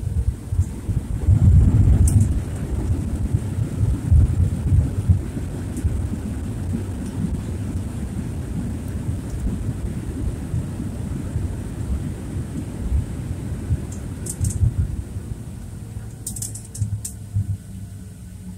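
Boeing 737 landing roll heard from inside the cabin: a deep rumble of the engines and wheels on the runway, loudest in the first few seconds, then easing steadily as the jet slows. A few light rattles come near the end.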